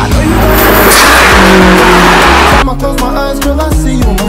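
Background music with a loud rush of car noise over it for about two and a half seconds, cut off abruptly.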